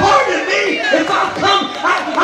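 A man's loud, impassioned voice into a handheld microphone, amplified over a hall's PA with some room echo.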